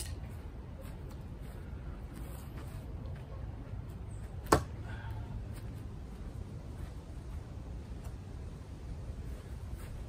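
A single sharp impact about four and a half seconds in: a thrown Ka-Bar large tanto fixed-blade knife hitting and sticking in a wooden target board, over a steady low outdoor background.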